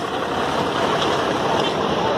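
Steady engine and road noise of heavy army trucks driving past in a convoy.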